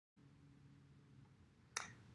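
Near silence with a faint low hum, then a single sharp click near the end.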